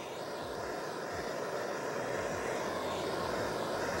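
Handheld kitchen blowtorch flame hissing steadily as it is played against the side of a metal mould, growing slightly louder. The heat melts the chocolate coating so the dessert can be released from the mould.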